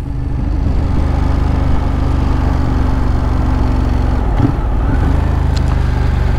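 Ducati Monster 821's L-twin engine running steadily while riding in town, its note briefly breaking about four seconds in before settling again.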